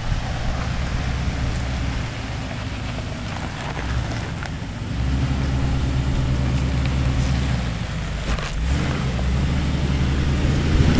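Jeep Wrangler Unlimited's 4.0-litre straight-six engine running at low crawling speed as the Jeep climbs over a granite rock, the throttle opening and the engine getting louder about halfway through. A few short knocks a little after eight seconds.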